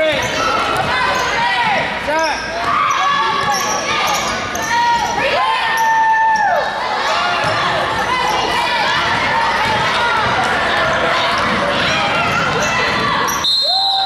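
Basketball game sounds on a hardwood gym floor: sneakers squeaking in short chirps and a basketball being dribbled, over crowd voices in a large echoing gym. Near the end a short, high referee's whistle stops play.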